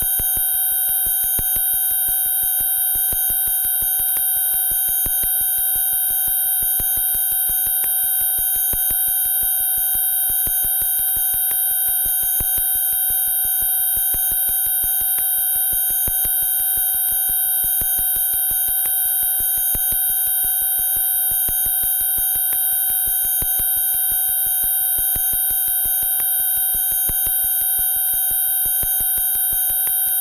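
A steady, unchanging electronic tone made of several high pitches at once, with rapid, even ticking beneath it. It sounds like an alarm and holds at the same level without a break.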